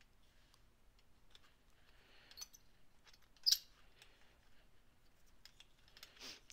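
A small hand tool working the edges of an unbaked polymer clay piece, making faint scattered clicks and scrapes against the work surface, with one sharper scrape about three and a half seconds in.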